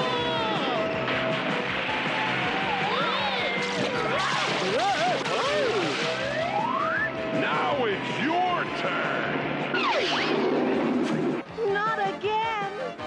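Cartoon background music with characters' wordless yells and screams over it, their voices swooping up and down in pitch. There is a cry near the end.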